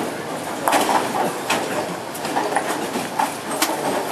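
Bowling alley lane noise: bowling balls rolling down the lanes, with scattered sharp crashes and clatter of pins being struck on the surrounding lanes.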